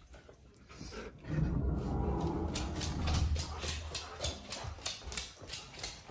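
A husky's claws clicking on a wooden floor as it walks, about three to four clicks a second. Before that comes a low rumble, most likely the dog grumbling.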